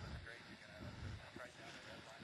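Faint background voices, barely above room tone.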